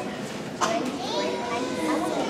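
Children's voices chattering and talking over one another in a large hall, with one voice rising above the murmur about half a second in.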